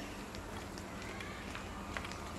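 Faint footsteps of two people walking quickly on a dirt path, a few soft steps over a steady outdoor background hiss.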